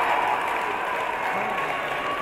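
Arena crowd applauding a scored throw in a judo bout, with voices mixed in; the clapping eases off slightly.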